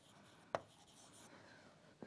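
Faint scratching of a stylus writing on a tablet screen, with a single sharp tap about half a second in.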